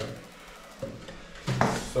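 Quiet small tiled room with one short light knock a little under a second in, from the grout float and grout cup being handled.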